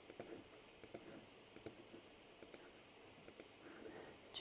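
Near silence with a handful of faint, irregularly spaced computer mouse clicks.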